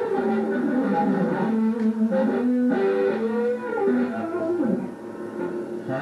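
Electric guitar played alone: a short lead run of single notes with a bend, getting quieter about five seconds in.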